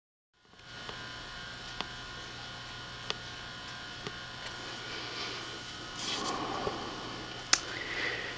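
Philco 50-T702 vacuum-tube television chassis switched on and running, giving a steady buzzing mains hum, with a few sharp clicks scattered through.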